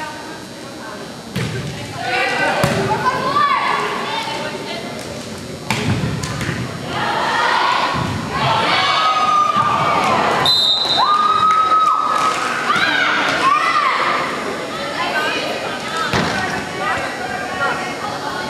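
Volleyball struck hard twice in a gym, a couple of sharp thumps in the first six seconds, amid shouts and cheers from players and spectators. A short high whistle blast, a referee's whistle, about ten seconds in.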